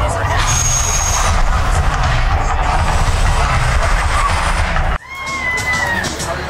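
Volcano attraction erupting in flames: a loud, deep rumbling roar that starts suddenly and stops abruptly about five seconds in. Crowd chatter on the sidewalk follows.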